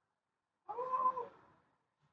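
A single short, high-pitched vocal cry lasting under a second, arching slightly up and then down in pitch.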